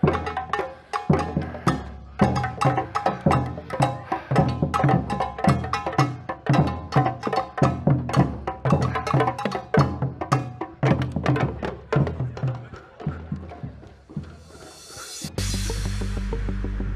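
A drum band of several drummers playing a fast, busy rhythm together on an assortment of drums. The drumming fades toward the end and gives way abruptly to steady background music with a heavy bass.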